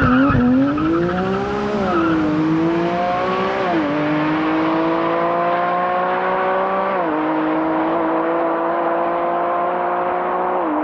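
2023 Porsche 718 Cayman GT4 RS's 4.0-litre naturally aspirated flat-six accelerating hard away from the listener, its pitch climbing through each gear and dropping at three quick upshifts of the PDK dual-clutch gearbox, growing more distant.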